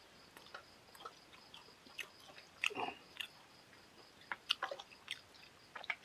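A man chewing a mouthful of food close to the microphone: soft, scattered wet smacks and clicks of the mouth, with one louder, longer mouth sound a little under three seconds in.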